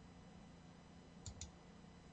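Two quick, faint computer mouse clicks, about a quarter second apart, against near silence, as a frozen program fails to respond.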